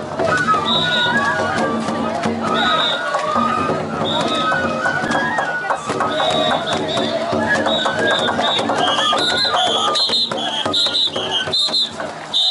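Festival float hayashi music: a high flute melody stepping up and down over steady drum and gong strikes, with voices of the crowd around it. A loud whoop comes about seven seconds in.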